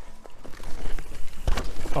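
Mountain bike tyres rushing over dirt, then one hard thud about one and a half seconds in as the bike lands after jumping a small drop. Jumped rather than rolled, the bike spends more time in the air, so the landing contact is heavier.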